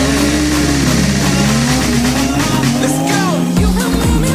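A drift car's engine revving up and down as it slides, with tyre squeal, over background music whose beat comes in near the end.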